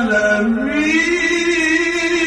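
A man's voice chanting an Arabic devotional song, holding one long note that dips and then rises in pitch.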